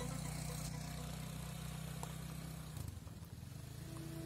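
Motor scooter engine running steadily at low revs on a rough dirt track, easing off about three seconds in, then picking up again.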